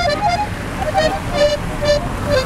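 Steady traffic noise on a busy city avenue, with a string of short pitched notes of differing pitch sounding over it.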